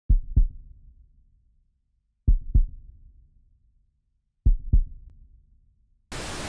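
Slow heartbeat sound effect: three deep double thumps, lub-dub, about two seconds apart, each fading out before the next.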